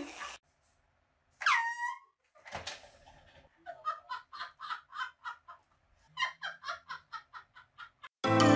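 A short high squeal that rises and then falls in pitch, then a click. After that a person laughs in quick even bursts, about three a second, for several seconds.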